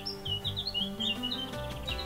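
A small songbird chirping in a quick run of short, high notes, over soft background music with low held notes.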